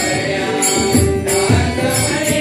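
Devotional Marathi bhajan: a group chants an abhang to harmonium accompaniment. A drum and small hand cymbals keep a steady beat of about two strokes a second.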